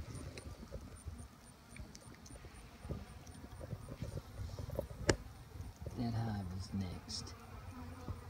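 Honey bees buzzing around an open hive and its spread-out comb, a low hum with a bee's pitch rising and falling as it flies past the microphone near the end. A single sharp click about five seconds in.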